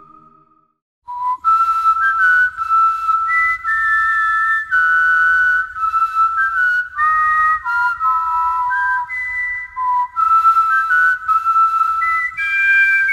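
A person whistling a melody in held, changing notes, starting about a second in, after the tail of a sung chord fades out.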